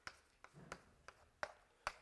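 Chalk tapping and knocking on a blackboard as a diagram is drawn: about five short, sharp taps, the loudest near the end.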